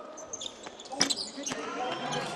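Basketball bouncing on a hardwood court: four sharp thuds at uneven intervals over the crowd noise of an indoor arena.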